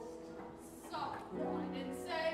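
Sung-through stage musical: a cast member singing with instrumental accompaniment. It is softer through the first second, then settles into held notes.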